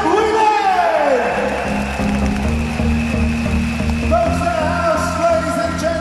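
Loud event music playing over an arena's sound system, with a heavy bass and a voice over it that slides down in pitch about a second in and holds a long note near the end.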